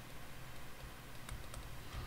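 Faint taps and clicks of a pen stylus writing on a tablet, a few light strokes over quiet background hiss.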